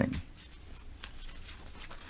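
A pause in a man's speech: faint room noise with a steady low hum and a few soft ticks.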